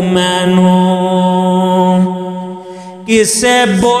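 Punjabi Sufi kalam singing: a voice holds one long note that fades out about two seconds in. A new sung phrase with sliding pitch begins about three seconds in.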